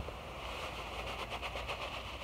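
Granular lawn fertilizer pouring from a bag into a plastic broadcast spreader hopper: a steady hiss of granules.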